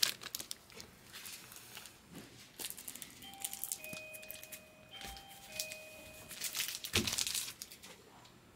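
Plastic trading-card sleeves crinkling and rustling as cards are handled, in short irregular bursts with the loudest near the end. A few faint held tones sound in the middle.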